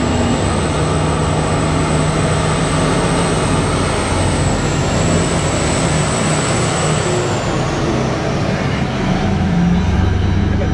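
Giant BelAZ mining dump truck driving past, its heavy engine running steadily with a thin high whine that fades out about eight seconds in.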